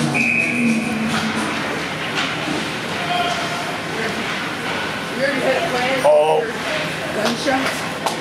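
Ice hockey rink ambience during play: a steady hubbub of skates, sticks and spectators, with a short steady high note just after the start and voices shouting about five to six seconds in.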